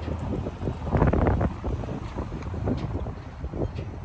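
Wind buffeting the microphone: a low, steady rumble with a stronger gust about a second in.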